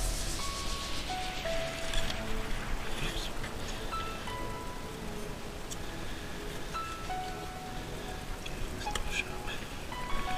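Quiet background music: sparse, separate held notes at changing pitches over a steady hiss.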